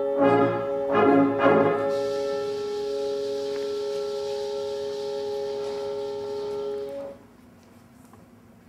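Symphonic band playing brass-led chords: two short accented chords, then a long held chord with a high hiss above it, which stops together about seven seconds in, ending the scene's music.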